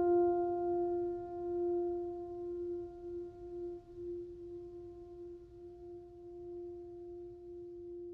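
Background music: a last piano note rings on as one steady held tone, slowly fading away.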